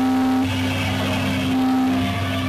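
Live band's amplified electric guitars holding a loud, steady, droning chord with no drumbeat. A brighter, hissier layer joins about half a second in.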